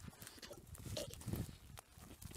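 Faint, irregular soft thuds and knocks, with no steady tone and no speech.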